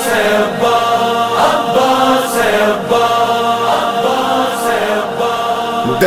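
Male voices chanting a sustained, droning chorus of a nauha (Shia lament for Muharram) between lines of the lead recitation, swelling and easing every second or so.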